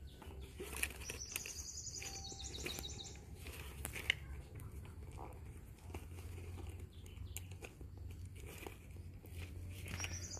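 A small bird's high, rapid trill of repeated notes, starting about a second in and lasting about two seconds, over faint scattered clicks and a low steady rumble.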